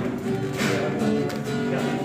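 Acoustic guitar being strummed, several chords ringing on.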